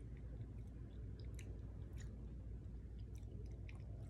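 Faint chewing of a bite of crumbly tofu-based vegan herbed feta, with scattered soft mouth clicks.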